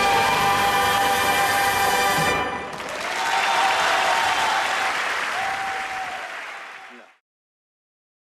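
Singers and live orchestra hold the final chord of the song, which ends about two seconds in. The audience applauds, then it fades and cuts off abruptly near the end.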